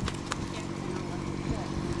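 A horse's hooves striking the sand of a round pen as it moves along the fence: a few scattered dull thuds, with a voice faint in the background.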